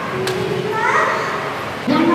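Children's and adults' voices chattering together, with a child's high voice standing out about a second in.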